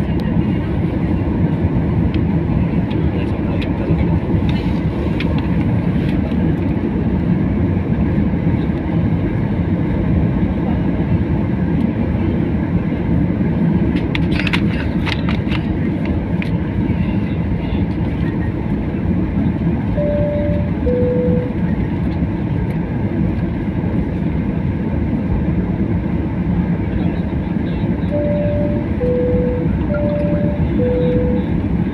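Steady low rumble of a jet airliner rolling on the ground, heard from inside the passenger cabin. A two-tone high-low cabin chime sounds about twenty seconds in and again near the end.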